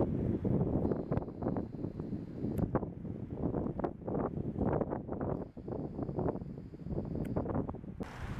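Wind buffeting a camera microphone: an uneven, gusting rumble. A faint thin high tone comes in twice and stops each time.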